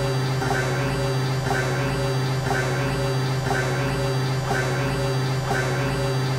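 Experimental synthesizer music driven by Max/MSP: a steady low synth drone over a pulsing deeper layer, with a short high blip repeating about once a second.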